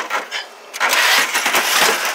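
Sheet-metal computer cases scraping and rattling against each other as they are shifted about. After a couple of light clicks, a loud, rough scrape begins a little under a second in and lasts about a second.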